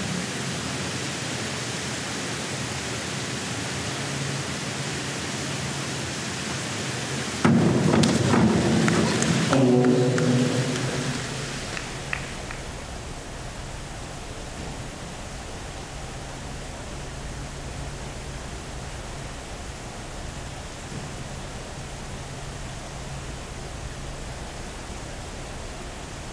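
Steady hiss of an indoor pool hall's ventilation. About seven and a half seconds in comes a sudden loud burst, the diver's entry into the pool, followed by a few seconds of spectators' shouts and clapping. After that the hiss goes on, quieter.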